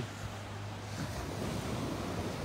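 Small waves of the Mediterranean surf washing up on a sandy beach: a steady, even wash of water.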